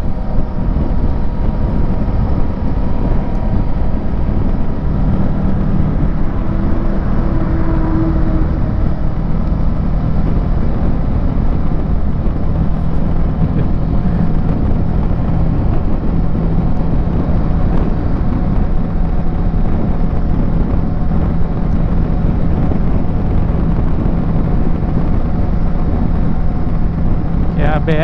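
Kawasaki Versys 650's parallel-twin engine running steadily at highway cruising speed, with a constant low hum and heavy wind rumble on the microphone.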